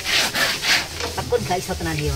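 Quick, repeated rubbing strokes, about four or five a second, that die away about a second in, with a man's voice briefly heard near the end.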